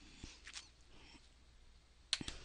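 Near silence: faint room tone with a couple of faint short clicks in the first half second.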